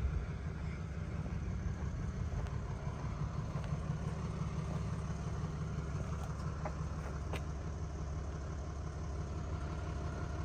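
A steady low rumble, with a few faint ticks about six to seven seconds in.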